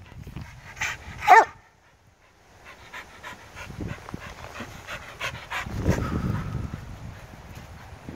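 A dog gives two short whines in the first second and a half, then pants steadily. A louder low rumble comes about six seconds in.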